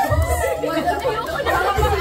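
Several people talking over one another, with background music carrying a pulsing bass beat.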